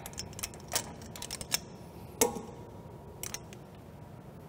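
Light metallic clicks and clinks as an axle nut is threaded onto the wheel hub's splined stub axle, with one louder ringing clink a bit past two seconds in.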